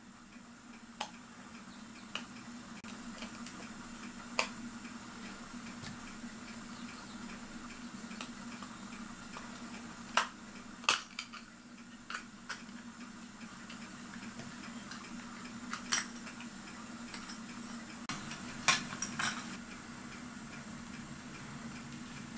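Light metallic clicks and taps of a small tool working the bent-over tabs on a clock's brass bezel ring, about ten of them at irregular intervals, over a steady low hum.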